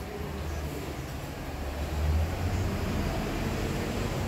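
Steady background noise of the shop: a low rumble under an even hiss, growing a little louder about halfway through.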